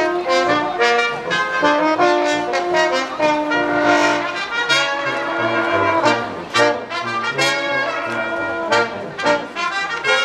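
Live brass ensemble of trumpet, trombone and tuba playing a brisk, rhythmic tune of short, quickly changing notes.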